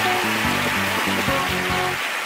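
Upbeat stage music with a stepping bass line, played over audience applause; the music cuts off at the very end.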